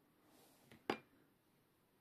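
Near quiet, with one sharp click just before the middle.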